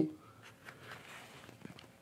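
Faint rustling and a few soft clicks from hands handling an electric guitar, a Telecaster with a string bender.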